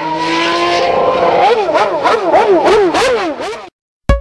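Car engine running steadily for about a second, then revved up and down in quick repeated blips, cutting off suddenly near the end.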